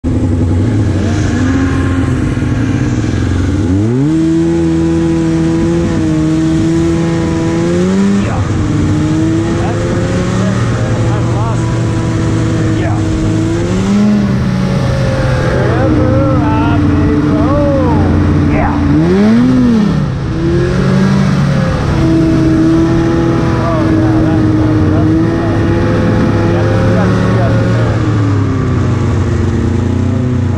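Old snowmobile engine running under way, heard from on the sled, its pitch rising and falling with the throttle: a sharp climb about four seconds in, and a quick rise and drop near twenty seconds.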